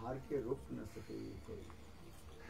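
A man's voice speaking briefly, then trailing off into faint sounds with a steady pitch.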